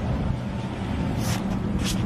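A steady low outdoor rumble with a faint hum in it, and two short hisses about a second and a half in and near the end.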